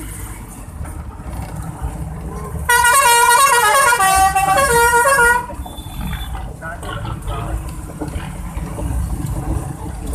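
A bus's musical horn plays a short tune of stepped notes for nearly three seconds, starting a few seconds in, over the low rumble of traffic engines.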